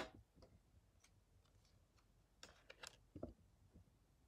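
Near silence with a few faint taps and clicks of Pokémon trading cards being handled and set down, the clearest around three seconds in.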